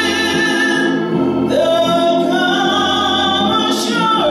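A woman singing a slow gospel song with long, wavering held notes over sustained organ-like chords; her voice climbs to a higher held note about a second and a half in.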